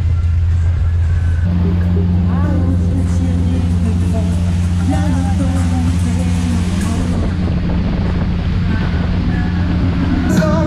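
Motorboat engine running steadily underway, a low drone, with a second steady hum joining about one and a half seconds in. Pop music with singing plays over it.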